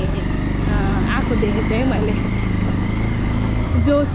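Motorcycle engine running steadily under way, a low even hum, with a woman's voice talking over it.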